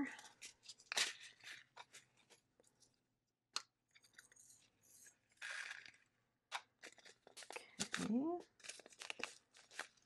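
Small plastic zip bag crinkling and clear plastic drill containers clicking as resin diamond-painting drills are handled and put away, in a run of short, scattered clicks and one longer rustle about five seconds in.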